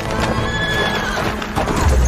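A horse whinnying over galloping hoofbeats, with background score music. Near the end a deep low rumble sets in as the horse goes down.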